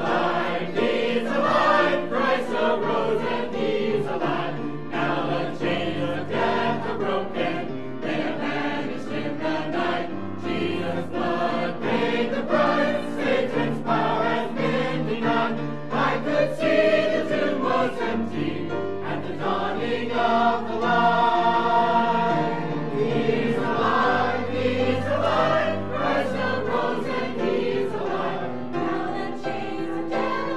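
Mixed choir of men and women singing a gospel cantata piece in harmony, with sustained, continuous singing.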